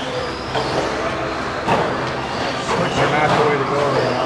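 Several 1/10-scale electric 2WD stadium trucks racing on an indoor dirt track, their motors running as they pass, with voices in the background.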